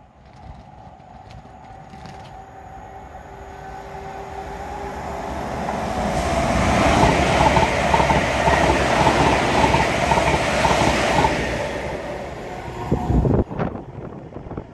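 ScotRail electric multiple unit approaching and passing along the platform at speed: a rushing of wheels and air that builds steadily to a loud peak with a rapid, even clatter of wheels, then dies away. A few sharp thumps come near the end.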